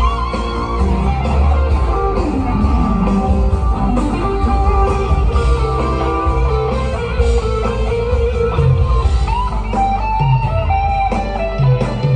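Live rock band playing an instrumental passage, with an electric guitar playing melodic lead lines that slide in pitch over the band.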